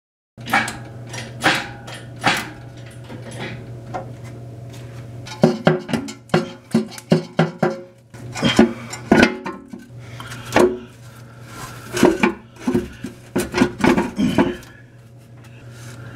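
Oil pan of a 1994 Saab 9000 being worked loose and lowered from the engine block: a run of irregular metallic knocks and scrapes, thickest in the second half, over a steady low hum.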